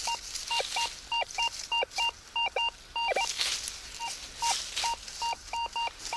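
Rutus Alter 71 metal detector sounding a run of short beeps as its coil sweeps the forest floor, several of them dropping quickly in pitch. These are its target signals from metal in the ground.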